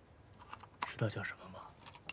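Light clicks and taps of a small hard object being handled at a table, with a brief vocal sound from a man about a second in.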